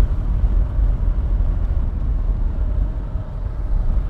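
Kawasaki KLR650 motorcycle running at a steady cruising speed, its engine heard under a low, even rumble of wind and road noise.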